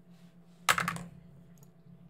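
A quick flurry of computer keyboard keystrokes, several closely spaced clacks lasting about a third of a second, about two-thirds of a second in. A faint steady electrical hum runs underneath.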